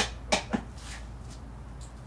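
Adjustable weight bench having its backrest incline changed: three sharp clacks within about half a second as the backrest and its adjustment pieces are moved and set into a lower notch.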